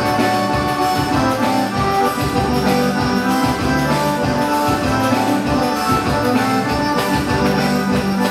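Forró dance music led by a piano accordion, its held chords and melody over a bass line, with percussion keeping a steady dance rhythm.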